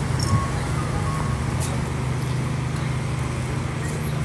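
City street traffic: a steady low engine hum of road vehicles with no sudden events.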